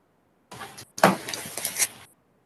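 Garbled, broken-up video-call audio that cuts in and out in two short noisy bursts with dead silence between them: the stream is dropping out over a bad connection.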